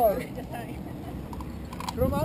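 Voices of a group of people: a voice calling out right at the start, then quieter background chatter, with one short sharp click near the end.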